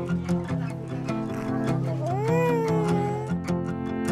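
Background music of evenly plucked guitar notes. About two seconds in, a single infant's cry rises and then falls in pitch, lasting about a second.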